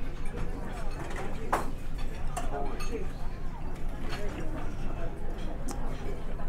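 Dining-room ambience: background chatter of other diners with a few short clinks of cutlery on crockery, one sharper clink about one and a half seconds in.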